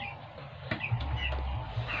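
A few faint, short bird calls, most likely chickens, over a low hum that sets in about a second in.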